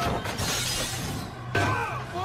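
Film soundtrack: a tall tower of champagne glasses shattering, a dense crash of breaking glass in the first second or so, under music.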